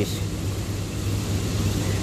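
Steady low mechanical hum with an even hiss over it, like an engine or machine running in the background.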